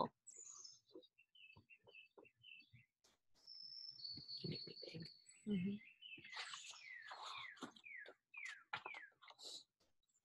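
Faint bird chirping: a few short high notes, then a thin held note in the middle, then a quick series of down-slurred chirps in the second half.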